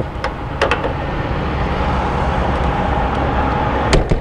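Braun Millennium Series wheelchair lift's hydraulic pump running steadily as the lift folds in, a constant hum over a low rumble. A few light knocks come early on, and a sharper one near the end.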